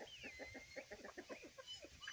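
Chicken clucking faintly in a quick run of short, falling clucks, about six or seven a second.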